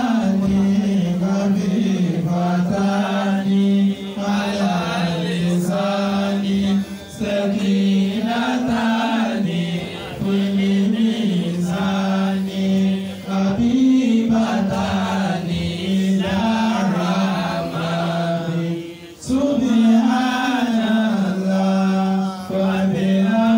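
A man's voice chanting a religious recitation in one melodic line, holding long notes and stepping between a few pitches, with short breaks for breath every few seconds.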